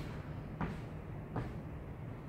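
Two-footed jump landings on artificial turf: soft thuds about three-quarters of a second apart, the first right at the start, under a steady low hum.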